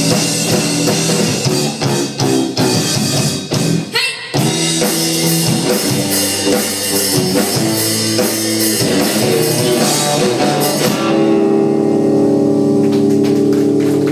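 Live indie rock band playing: electric guitars over a drum kit. The music drops out briefly about four seconds in, and from about eleven seconds a single chord is held and rings steadily.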